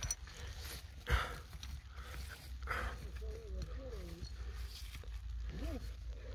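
Gloved hands scraping through loose ash and soil and working a small glass jar free, with a knock about a second in and a low wind rumble on the microphone. In the second half come faint wavering whine-like vocal sounds, and a short rising-and-falling one near the end.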